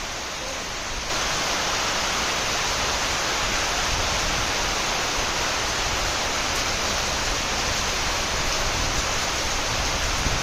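Heavy rain falling on a ship at sea, a steady hiss that gets louder about a second in and then holds.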